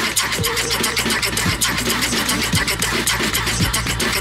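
Electronic dance music playing through a club sound system: rapid, even hi-hat ticks over a deep, steady bass line, with no vocals.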